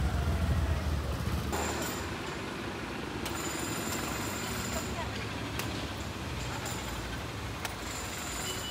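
Street noise of traffic and background voices, with a low rumble in the first second and a half and three short sharp knocks in the second half.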